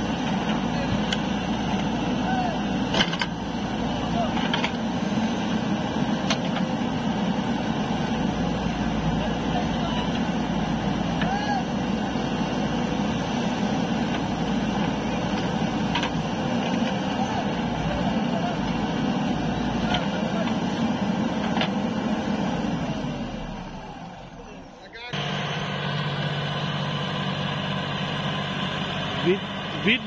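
Backhoe loader's diesel engine running under load while it digs and dumps mud, with a few sharp knocks from the working bucket. About three-quarters of the way through, the sound fades and then cuts abruptly to a steadier engine drone.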